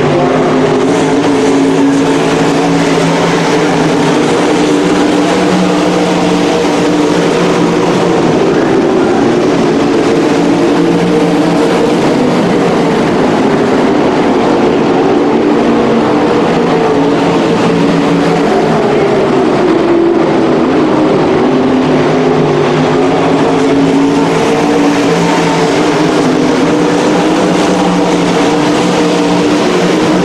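A field of winged sprint cars racing on a dirt oval, their V8 engines loud and continuous, with several engine notes rising and falling as the cars work around the track.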